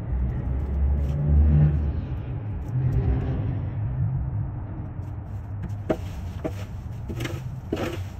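Low rumble of a car engine passing on the street, loudest in the first couple of seconds. In the last two seconds come several short scrapes as a shovel digs into a pile of dry leaves on pavement.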